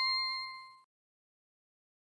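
A bright, bell-like ding sound effect with a clear pitch, ringing out and fading away, cut off a little under a second in, followed by silence.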